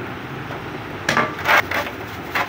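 A hand tool scrubbing and scraping a small generator's cylinder head in a tray of cleaning fluid. A few short, scratchy strokes come about a second in, the loudest near the middle of the burst.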